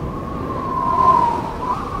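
Howling wind sound effect: a high whistling tone that wavers slightly in pitch, over a low rushing noise.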